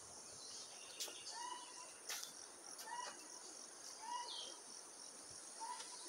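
Faint forest ambience: a steady high-pitched insect drone, with short rising chirps repeating about once a second and a couple of light clicks.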